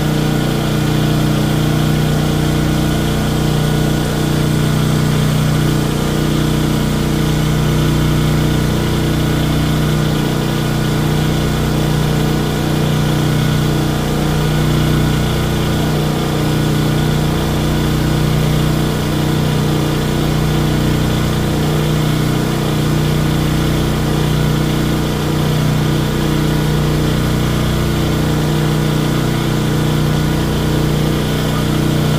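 Westinghouse 14,500-watt portable generator engine running steadily at constant speed.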